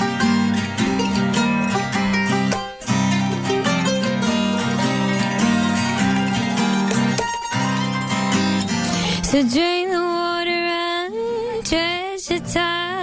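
Live acoustic folk band playing an instrumental passage, with banjo and mandolin picking over acoustic guitar. About nine seconds in, the instruments drop away and a woman's voice comes in, holding long wavering notes almost unaccompanied.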